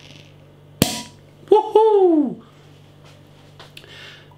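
Cork popping out of a wire-caged, corked bottle of Belgian strong ale: a single sharp pop about a second in. It is followed by a short voiced exclamation that falls in pitch, then a faint hiss.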